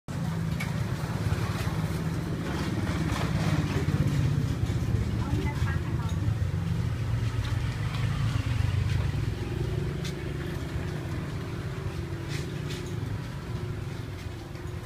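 Steady low rumble of passing road traffic, with a few sharp clicks scattered through it.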